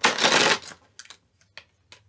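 A tarot deck shuffled by hand: a loud half-second burst of flicking cards, then a few light taps of the cards.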